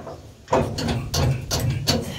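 A run of about six irregular metal knocks and clanks as the concave and rotor parts inside a Case IH combine are worked by hand while the concaves are being changed.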